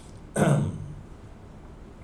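A man clearing his throat once, short and loud, about half a second in.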